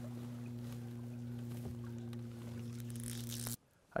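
A small boat motor running steadily: a low, even hum that stops abruptly near the end.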